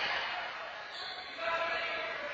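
A rubber handball bouncing on the court floor, with one hit about one and a half seconds in. The sound echoes around the large indoor court, and players' voices can be heard.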